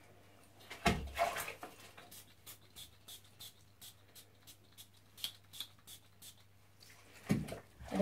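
Barrier spray can hissing onto the skin around a stoma: one longer spray about a second in, then a run of short puffs, about two or three a second.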